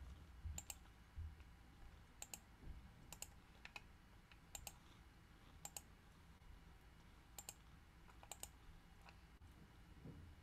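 Faint, scattered clicking from a computer picked up by an open video-call microphone, about eight clicks spread irregularly, each a quick double click, over near silence.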